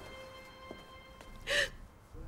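Faint held music notes fade under the scene. About one and a half seconds in comes a short tearful gasp from a crying woman.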